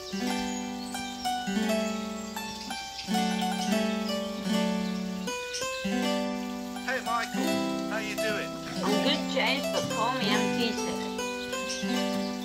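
A recorded song playing: held, evenly changing chords with a melody over them. A voice glides in over the top from about seven seconds in.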